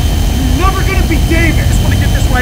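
A loud, steady low rumbling drone of trailer sound design, with a strained, raised voice over it about halfway through.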